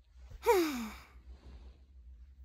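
A single short sigh with voice in it, about half a second in, falling in pitch as it fades.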